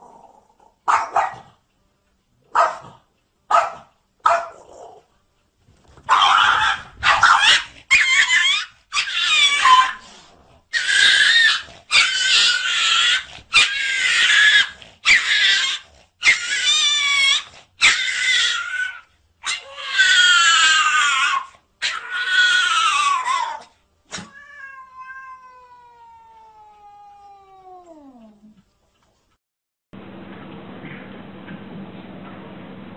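A cat caterwauling: a few short cries, then a long run of drawn-out, wavering yowls of about a second each. Near the end comes one long call that slides steadily down in pitch.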